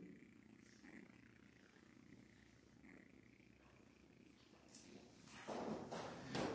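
Near silence: room tone with a faint low hum, and a few soft knocks and rustles near the end.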